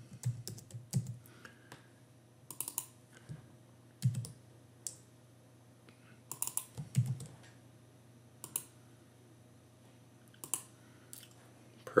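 Computer keyboard typing in short, scattered bursts of keystrokes with pauses between them.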